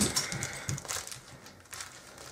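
Paper and bubble-wrap packaging being handled by hand to unwrap a small item: a run of irregular crackles and rustles that thins out toward the end.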